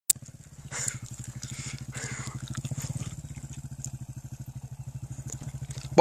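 Motocross bike engine running at a steady low speed with an even, fast pulsing beat, not revving.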